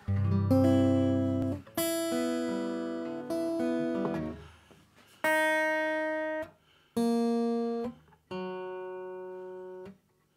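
Steel-string acoustic guitar: two strummed chords, then three single strings plucked one at a time, each lower than the last, with pauses between. He is checking and adjusting the guitar's tuning.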